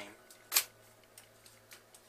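One sharp plastic click about half a second in, from a large Octuptarra droid action-figure toy as a hand positions its leg on a wooden tabletop. After it only a faint steady hum and a few tiny ticks remain.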